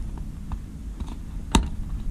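Small handmade parts being pressed and fitted together by hand, giving light clicks over a low handling rumble, with one sharper click about one and a half seconds in.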